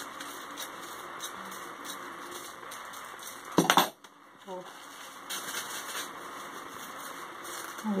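Scissors making faint small snips through white crepe paper, with a brief loud clatter about three and a half seconds in.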